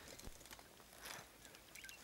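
Near silence: faint outdoor ambience with a few soft ticks and a faint short chirp near the end.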